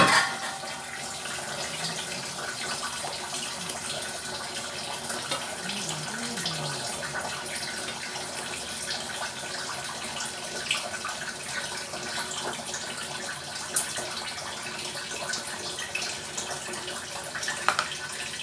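Chicken adobo sizzling steadily in a nonstick wok over a gas flame. A clatter comes right at the start, and a few light knocks follow as the chicken is stirred with a wooden spoon.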